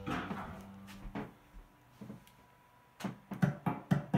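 Music playing through the speaker setup cuts off at the start, leaving a short fading tail. Then low-level handling noise with scattered knocks and clicks, several in quick succession near the end.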